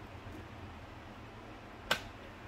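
A single sharp click near the end as the Marshall JCM900 amplifier's power switch is flipped on, over a faint steady hum.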